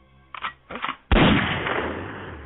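A sudden, loud gunshot sound effect about a second in, dying away over most of a second, as a hip hop record begins. A couple of short, faint sounds come just before it.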